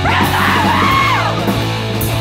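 Hardcore no-wave punk song: a yelled vocal line sliding in pitch over loud, steady full-band backing.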